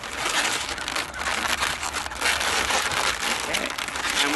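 Latex modelling balloons rubbing and crinkling against each other and against hands as they are twisted together, a dense crackling rustle that eases briefly about halfway through.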